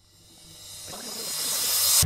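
A rising whoosh, a hiss high in pitch, swells steadily from near silence over two seconds: an edited riser transition sound effect.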